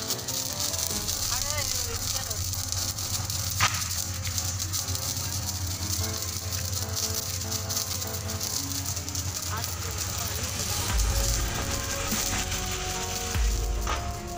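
Hand-held sparklers fizzing and crackling steadily in a dense stream of fine pops. A couple of low rumbles come near the end.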